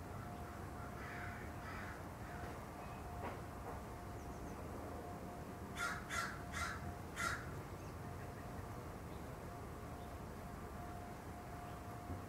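A bird calling outdoors: four harsh calls in quick succession, about a second and a half in all, a little past the middle, with a couple of fainter calls about a second in.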